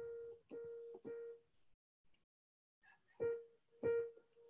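Electronic keyboard sounding the same single note in short strikes: three quick ones, a pause of about a second and a half, then two more near the end, as the keyboard's volume is being turned up and checked.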